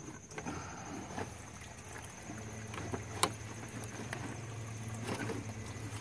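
Light plastic and metal clicks and knocks from a BMW E36 radiator being worked loose from its mounts in the engine bay, with one sharper click about three seconds in. A steady low hum comes in about two seconds in and holds.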